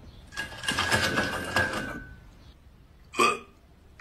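Rubber chicken toy squawking as the dog mouths it: a long, hoarse screech of about two seconds that tails off, then a short second squawk near the end.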